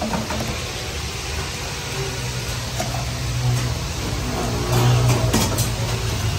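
Steady low rumble of gas burners under a row of karahi woks, with a faint hiss of frying and a few metal clinks near the end.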